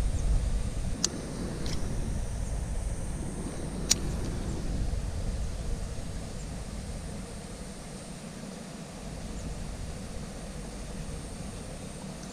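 Baitcasting reel worked by hand during a lure retrieve: a few sharp clicks in the first four seconds over a steady low rumble.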